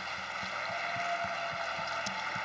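Congregation applauding: a steady wash of many hands clapping.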